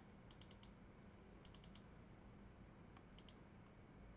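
Faint computer keyboard keystrokes in three short clusters of three or four clicks each, over near-silent room tone.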